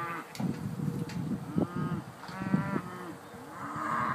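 Scottish Highland cattle mooing in several drawn-out calls.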